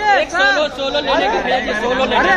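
Several people talking and calling out over one another: overlapping voices and chatter.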